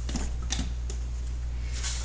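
A steady low machine hum with a few faint, light clicks over it.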